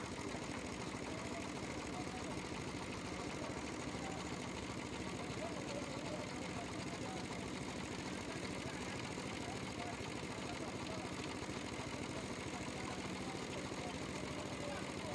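Spray gun hissing as it sprays wood finish onto a chair frame, over the steady hum of the air compressor that feeds it.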